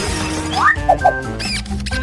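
Background music with held tones, overlaid with short squeaky cartoon-style sound effects: a quick rising squeak a little over half a second in, then a few brief chirps.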